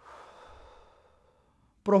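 A man's long, breathy exhale, a deep breath taken as a relaxation exercise, fading away over about a second and a half. Speech resumes at the very end.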